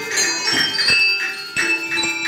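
A set of colored handbells rung one note at a time as a melody, a new bell struck about every half second, with the earlier tones still ringing under it.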